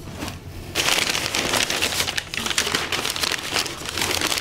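Crumpled newspaper packing rustling and crinkling as hands dig through it in a cardboard box, starting about a second in and running on in a dense crackle.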